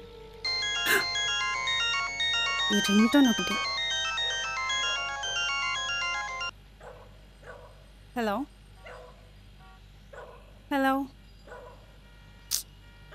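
Mobile phone ringtone playing a bright electronic melody for about six seconds, then cutting off suddenly when the call is answered.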